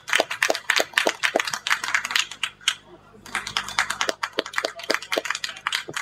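A small audience clapping, the separate claps coming several a second, with a brief lull about three seconds in before the clapping picks up again.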